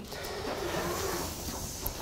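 Steady soft rustling of Bible pages being turned over a low room hum, with a small click near the end.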